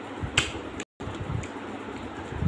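Close-up eating sounds: chewing with soft low thuds and one sharp mouth click, like a lip smack, about half a second in. The sound drops out completely for a moment just before the one-second mark.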